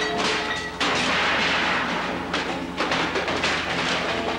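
Film fight sound effects over a steady musical score: a long, noisy crash about a second in, followed by several sharp thuds and knocks.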